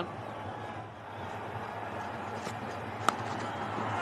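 Steady stadium crowd noise with a single sharp crack of a cricket bat hitting the ball about three seconds in: the ball taken off the top edge.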